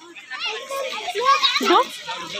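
A young child's high-pitched voice talking in short bursts.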